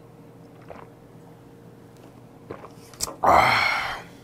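A man drinking makgeolli, with only faint small sounds at first. Near the end comes a short, loud, breathy "ahh" exhale after the swallow.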